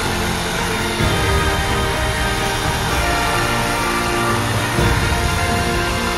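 Porter-Cable 18V cordless reciprocating saw running steadily with its trigger held, powered by a 20V lithium-ion battery through an adapter. Music plays underneath.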